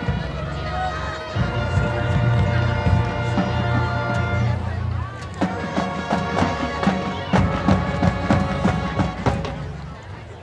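High school marching band playing: long held brass chords over a strong low bass, then, from about halfway, sharp drum hits come in under the chords.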